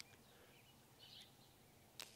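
Near silence: faint outdoor ambience, with a brief, faint high chirp about a second in.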